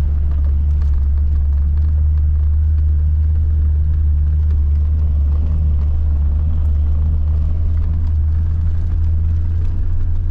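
Toyota Land Cruiser driving through a shallow river crossing, heard as a steady, heavy low rumble of engine and drivetrain with no change in level as it crosses.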